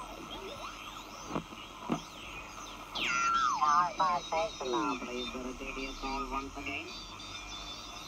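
Homebuilt 40-metre regenerative receiver heard through a speaker while it is tuned, with steady band hiss and whistles sliding up and down in pitch. About three seconds in, a sideband voice station comes in, its garbled voice sliding down in pitch as it is tuned in, then talking on in broken phrases.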